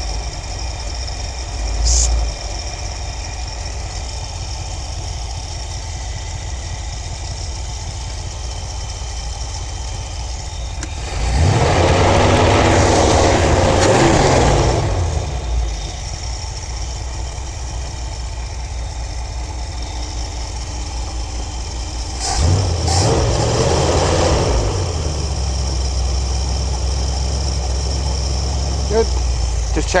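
Ford 302 small-block V8 with an Edelbrock four-barrel carburetor idling cold on the choke with no air filter, warming up. Twice the revs rise briefly and fall back to idle, once in the middle and again about two-thirds of the way through.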